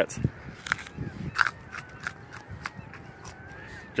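A raw carrot being bitten and chewed close to the microphone: a crisp crunch about a quarter second in, then a run of short crunches every half second or so.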